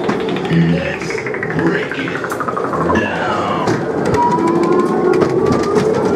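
Ghost-train sound effects: a tone glides down over the first two seconds and falls again briefly, then from about four seconds a slow siren-like rising glide begins, with a second, lower one rising near the end. Music-like sound and scattered clicks run beneath.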